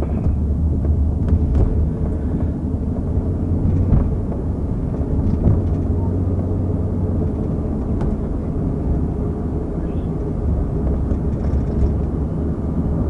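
Police patrol car running, a steady low rumble heard from inside its rear cabin, with a few faint knocks.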